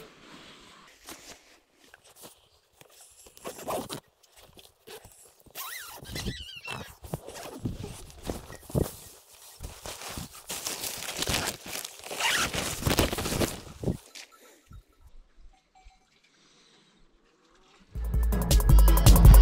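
A tent door zipper being pulled open in several rasping strokes, with the nylon tent fabric rustling as it is handled.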